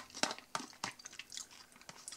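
Quiet eating sounds: chewing a mouthful of sausage-and-cheese salad, with soft, irregular clicks and squishes as a plastic fork pokes through the dressing in a plastic tub.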